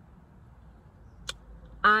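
A quiet pause with a faint low background hum and one brief click about a second in, then near the end a woman starts speaking with a drawn-out "I".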